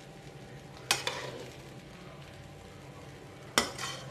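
Metal spatula stirring and tossing fried rice in a metal kadai, striking the pan with a sharp clank about a second in and again near the end. A low steady hum runs underneath.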